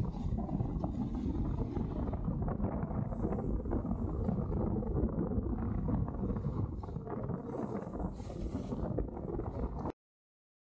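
Wind buffeting an action camera's microphone during a fast snowboard descent, a dense low rumble, with a few brief hissing scrapes of the board's edge carving through groomed snow. The sound cuts off suddenly just before the end.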